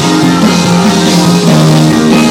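Live rock band playing loud, steady music with guitar and drums.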